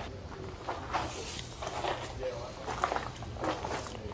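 Footsteps walking over a dirt floor strewn with debris, irregular steps about two a second, with faint voices in the background.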